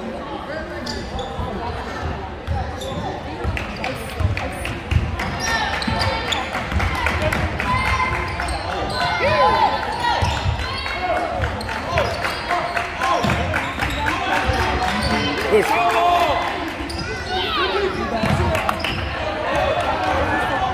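Indoor basketball game: the ball being dribbled and bounced on the hardwood court, with sneakers squeaking as players run and cut, over chatter from spectators.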